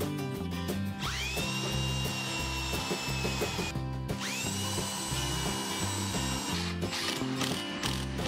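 Cordless drill (a red Milwaukee) run twice, each burst lasting a couple of seconds: the motor whine climbs as it spins up and then holds steady while the bit bores into the wooden cabinet frame. Background music plays underneath.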